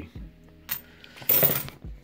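Australian 50-cent coins, twelve-sided and cupronickel, clinking against each other as they are handled. There is a light click, then a louder metallic clink about a second and a half in.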